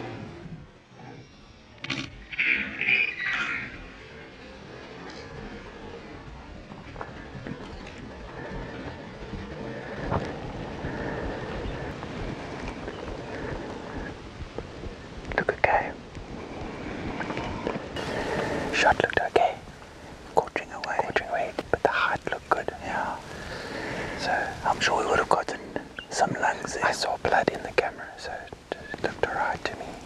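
Hushed whispering, in short broken bursts that grow denser over the second half, over a steady low background hiss.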